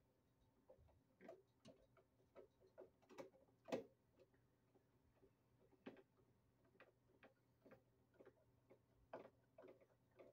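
Faint, irregular clicks and scrapes of a screwdriver turning the mounting screws of a GFI receptacle into a metal electrical box, the loudest click about four seconds in.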